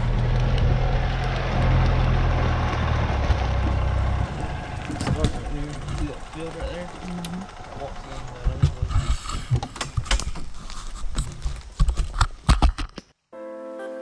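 Golf cart driving over rough woodland ground. For the first four seconds or so its motor gives a steady low drone. After that the ride is bumpier, with many sharp knocks and rattles. About 13 seconds in, the sound cuts off abruptly and music starts.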